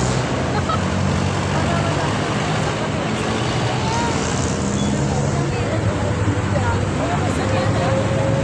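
Street traffic noise: vehicle engines running with a steady low hum under a general roadside din, mixed with a babble of nearby voices.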